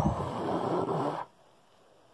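A person's noisy breath close to the microphone, lasting just over a second.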